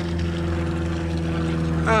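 Steady low drone of a running motor, holding one pitch with a stack of overtones.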